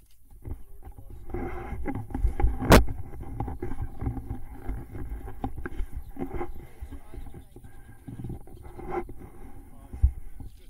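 Airboat engine and propeller idling with a steady low rumble and hum while the boat drifts, with one sharp knock about three seconds in.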